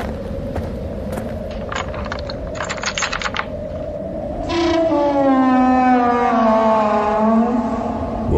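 Produced sound-effect bed over a steady low hum: a quick run of sharp clicks, then a loud, long, pitched sound that slides slowly downward for about three seconds.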